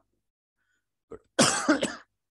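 Near silence, then about one and a half seconds in a man gives a short cough close to a headset microphone.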